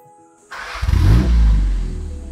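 A 1954 Triumph TR2's four-cylinder engine starting about half a second in, catching and revving up, then easing back to a steadier, lower run.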